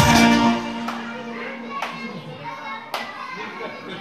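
A live band's clarinet-and-keyboard tune breaks off about half a second in, leaving one low held note that fades out around the middle. After that come room chatter and three sharp clicks.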